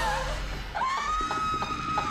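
A woman's high-pitched shriek from a horror film: a short wavering cry at the start, then one long held shriek beginning just under a second in, over low background music.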